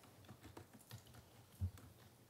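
Faint, scattered clicks of a computer keyboard, a few irregular keystrokes with the loudest one near the end.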